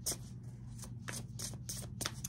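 Oracle cards being shuffled in the hands: a quick run of soft, light card flicks.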